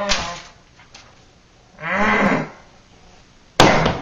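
A man's long, low moan of disappointment about two seconds in, followed near the end by a short, sharp noisy burst.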